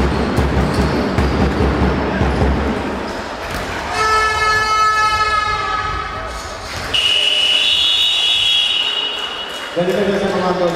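Basketball arena sound: crowd noise with the low thuds of a ball bouncing. A horn blows about four seconds in and lasts a couple of seconds. A long, shrill, high whistle starts about seven seconds in and stops just before the end.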